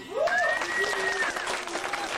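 Audience clapping and cheering at the end of a dance number, with one long high-pitched call held for about a second over the clapping.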